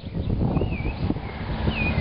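Steel sliding door, cut from a shipping container wall, rolling along its steel track on iron wheels: a steady low rumble.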